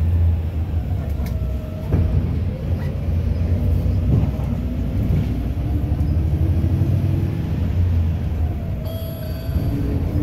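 Inside a city bus under way: steady low engine and road rumble, with a faint whine that rises and falls in pitch and a bump about two seconds in.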